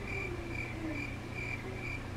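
Steady, evenly spaced high-pitched chirping, about two short chirps a second, over a faint low hum.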